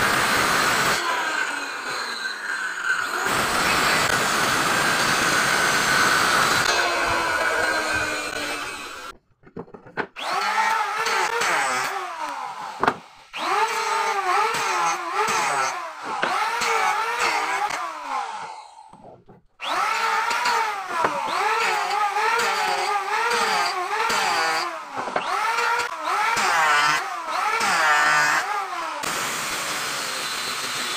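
A circular saw running and cutting wood for the first several seconds. After a short break, a small high-speed power tool takes over, an angle grinder with a sanding disc working a wooden block, its whine dipping and recovering about once a second as it is pressed into the wood.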